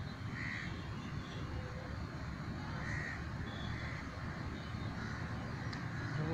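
A bird giving a few short, separate calls over steady low background noise.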